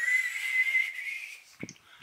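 A high, steady whistling tone, one held note with a slight waver, lasting about a second and a half, followed by a short soft thump.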